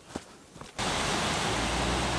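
A faint footstep or two on a dirt trail, then, just under a second in, a steady rush of river rapids that starts abruptly and runs on evenly.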